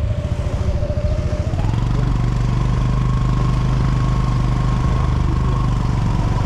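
Motorcycle engine running with the microphone riding on it. Its pitch rises about one and a half seconds in as it picks up speed, then holds steady.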